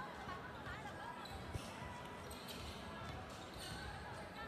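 Basketball being dribbled on a hardwood court, faint under the murmur of a gym crowd and distant voices.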